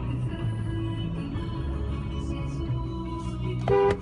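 Music from the car radio playing inside the car's cabin, with steady bass notes. A brief, loud beep-like tone sounds near the end.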